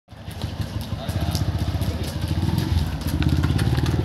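Motorcycle engine running close by, a dense pulsing rumble that builds over the first second and grows stronger about two and a half seconds in. Scattered light clicks sound over it.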